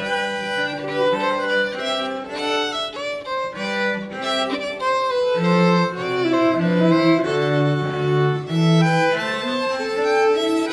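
Live string trio, two violin-family instruments and a cello, playing a slow piece with held bowed notes, the cello sustaining low notes under the higher melody.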